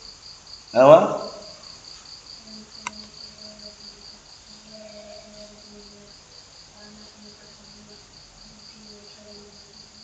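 A cricket chirping in an even, fast, high pulse of about four to five chirps a second, steady throughout. A short spoken word about a second in is the loudest sound. Faint low tones come and go in the middle.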